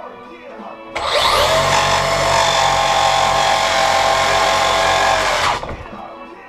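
Electric RC truck's motor and drivetrain running up with a whine that climbs briefly in pitch and then holds steady for about four and a half seconds, starting about a second in and cutting off suddenly.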